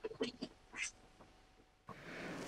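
A pause in a video-call conversation: a few faint, brief murmur-like sounds in the first second, then near silence, with a low hiss of background noise coming in near the end.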